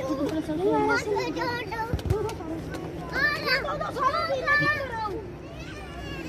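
Children shouting and calling out to each other during a game of football, with one dull thump about two seconds in.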